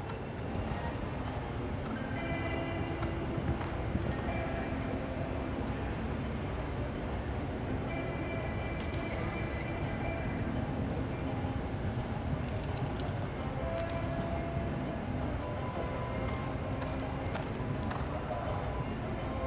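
Hoofbeats of a thoroughbred horse cantering on arena sand, a steady running beat, with music playing in the background throughout.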